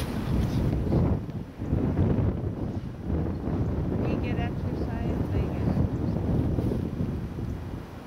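Wind buffeting the microphone: an uneven low rumble that swells and drops throughout.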